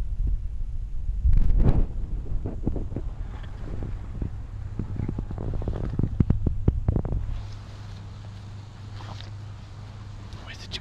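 Rustling and crackling of long plant leaves pushed about close to the microphone, over a heavy low wind-and-handling rumble. The rustling stops about seven and a half seconds in, leaving a steady low hum.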